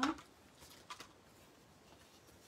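A few faint paper rustles and light ticks in the first second, from a sheet of Stampin' Dimensionals foam adhesive being handled on the desk.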